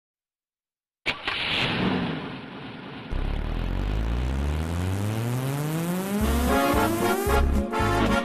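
Cartoon engine sound effect for a bus: a sudden noisy burst about a second in, then from about three seconds an engine revving with a steadily rising pitch. Near the end a song's music comes in with a steady beat.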